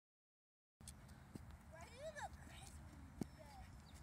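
Near silence: faint outdoor ambience, with a faint distant voice calling briefly about two seconds in and two soft knocks.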